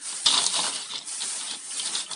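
Thin plastic bag crinkling as hands open and grip it, with dry shell pasta rattling inside. It starts with a sharp crackle shortly after the start and goes on as a steady crackle.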